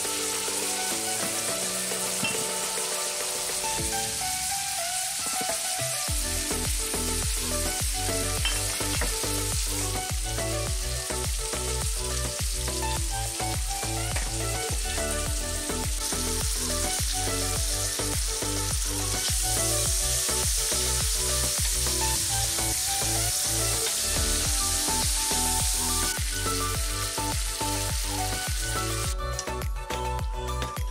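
Pork belly and green beans sizzling steadily as they stir-fry in a hot pan, with the scrape of a wooden spoon stirring them. Background music plays over it, and a steady beat with deep bass comes in about six seconds in.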